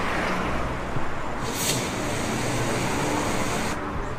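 Steady street traffic noise, with a short hiss about one and a half seconds in.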